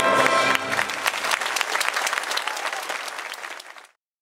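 A symphony orchestra and soprano hold a final chord that stops about half a second in, and the audience breaks into applause, which fades away near the end.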